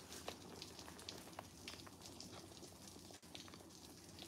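Near silence with faint soft rustles and a few light ticks from a thin canvas tote bag being folded and squeezed in the hands.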